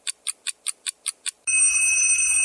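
Clock-and-timer sound effect: quick high ticks, about five a second, then, about one and a half seconds in, a steady bell-like ring that stops abruptly.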